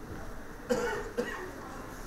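A person coughing twice in quick succession, the first cough longer and louder, over quiet room tone.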